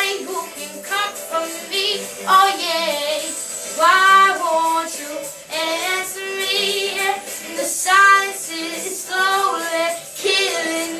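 A young girl singing, in phrases of a second or so with held notes that waver with vibrato.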